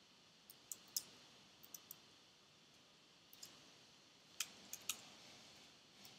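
Computer keyboard keys being typed: about a dozen faint, sharp clicks in small irregular groups over near-silent room tone.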